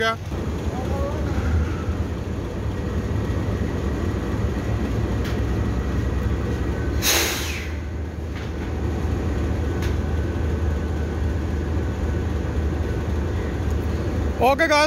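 Diesel-electric locomotive idling with a steady low rumble. About halfway through there is one short, sharp hiss of air.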